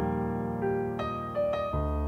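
Instrumental piano music: slow, sustained chords, with a new chord struck at the start, about a second in and again near the end.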